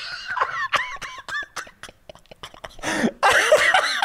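Men laughing hard without words. A high, wavering laugh comes in the first second and a half, then a short lull, then louder laughter again from about three seconds in.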